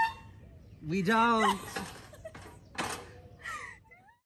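A person's voice: a drawn-out exclamation about a second in that wavers in pitch, with shorter vocal sounds after it.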